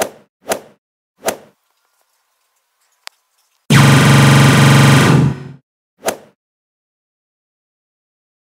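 Cartoon fight sound effects: three short hits in quick succession, then a loud laser-beam effect of about a second and a half for heat-vision eye beams, then one more hit.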